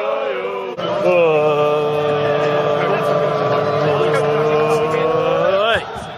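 Football crowd chanting in unison: a short sung phrase, then one long held note for about five seconds that rises sharply in pitch near the end and breaks off.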